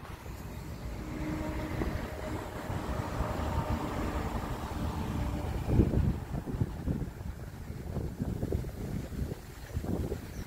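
Outdoor background: a steady mechanical hum with a few held tones for the first half, then irregular low gusts of wind buffeting the microphone, strongest about six seconds in.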